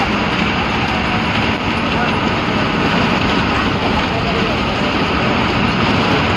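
Cabin noise of a moving MSRTC Ashok Leyland ordinary bus: the diesel engine runs with a steady drone under loud road and body noise.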